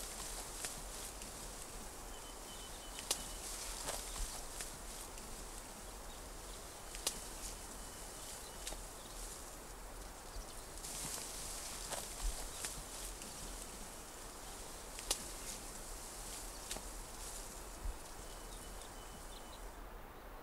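Quiet bamboo forest ambience: a steady high hiss, like insects, with a few faint runs of short chirping calls. Through it, scattered sharp snaps and rustles of bamboo stems and leaves, as of something moving through the thicket.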